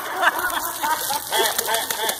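People laughing in short repeated bursts, several a second.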